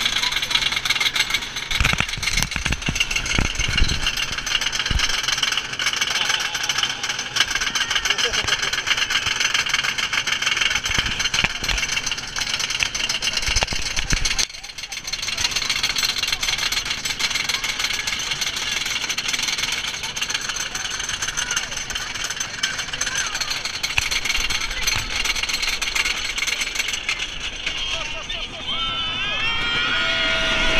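Wooden roller coaster train running along its track, its wheels rattling and rumbling with knocks in the first few seconds, under a constant rush of noise and riders' shouts and screams. The sound briefly dips about halfway through.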